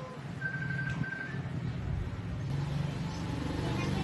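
A low engine hum, louder toward the end, with two short high beeps about half a second in.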